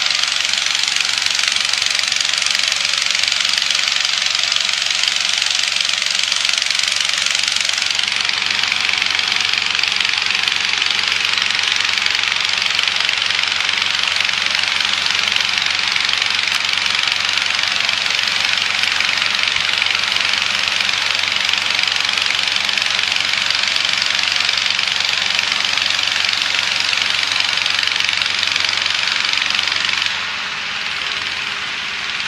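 Hot-air balloon inflator fan with a gas engine running steadily, blowing air into the envelope: a loud, even rush of air over a low engine hum, growing a little brighter about eight seconds in.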